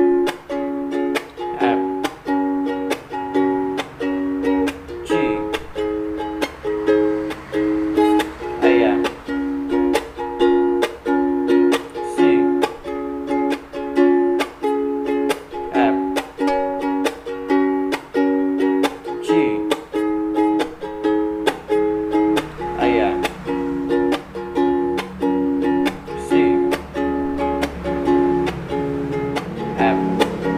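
Soprano ukulele strummed in a steady, even rhythm, cycling through the Am–C–F–G chord progression.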